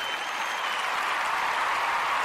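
Crowd applause, a steady wash of clapping that swells slightly, with a faint high whistle in the first second.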